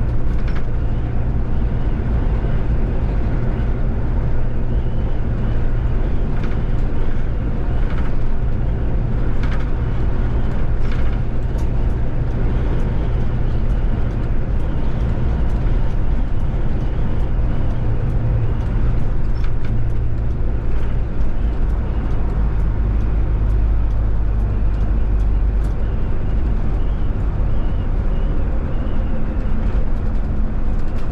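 Electric VDL Citea city bus driving at speed: a steady low road-and-tyre rumble with a few light clicks and rattles about a third of the way in.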